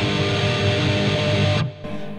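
Distorted electric guitar tremolo-picking a G minor chord, a fast, steady run of repeated picked notes that stops about one and a half seconds in.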